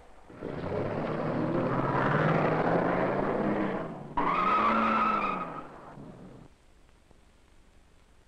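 A 1955 Pontiac convertible pulling away hard: the engine revs up, rising in pitch. About four seconds in, the tyres squeal briefly, and the sound fades away by about six and a half seconds.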